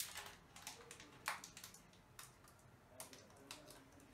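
Near silence with faint, scattered small clicks and taps at irregular intervals.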